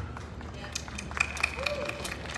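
Room noise of a large hall in a pause between a man's sentences over a PA: a low steady hum with scattered small clicks and rustles, and a short faint vocal sound near the end.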